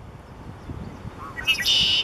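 Male red-winged blackbird singing its conk-la-ree song: a few short rising notes about a second and a half in, then a loud high trill.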